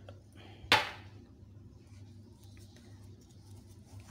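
A single sharp knock on the mixing bowl under a second in, as semolina is added to the batter; the rest is quiet with a faint steady low hum.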